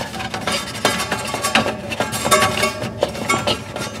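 Light, irregular clicks and clinks of a plastic thermistor clip being worked onto the metal cooling fins inside an RV refrigerator.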